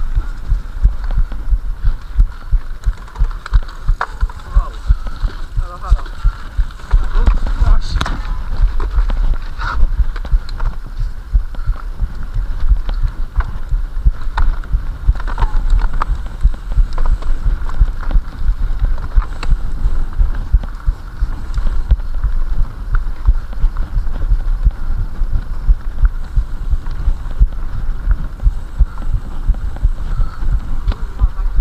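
Mountain bike ridden over a rough forest trail, heard through a handlebar-mounted action camera: a constant low rumble with frequent sharp knocks and rattles as the bike and mount are jolted.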